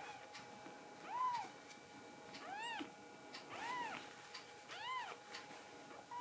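Kitten meowing four times, each a short high call that rises and falls in pitch, about a second apart.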